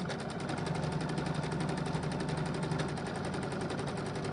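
Small domestic sewing machine running steadily at speed, its needle stitching at about ten strokes a second during free-motion thread painting with heavy 30- and 12-weight thread.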